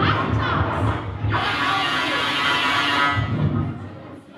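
Experimental vocal performance: a woman's amplified voice vocalising into a microphone, layered with live electronic processing into a dense sustained texture with sliding pitches near the start. It thins out and fades about three seconds in.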